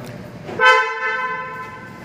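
Car horn sounding a single blast of about a second, starting about half a second in, loud at first and then fading.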